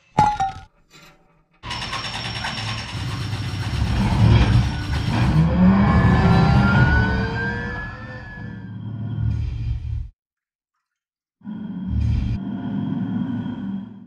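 Film soundtrack of music and sound effects: a short burst, then a loud, dense swell with rising tones that cuts off suddenly about ten seconds in. After a moment of silence, a lower, rumbling passage follows to the end.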